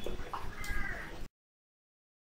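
A faint short animal call over low background noise, then the sound cuts out to dead silence about two-thirds of the way through.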